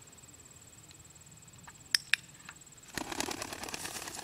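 A dog-training clicker snapping twice, press and release, about two seconds in, marking the pointer's stop. About a second later a thrown homing pigeon takes off with rapid wing flapping.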